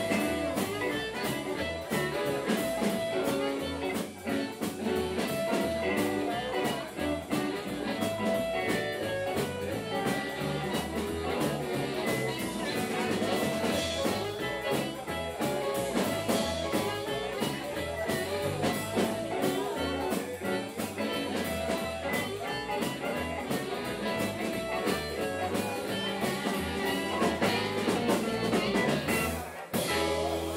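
Live blues band playing: electric guitar, bass guitar and drum kit, with no singing. The playing breaks off briefly just before the end.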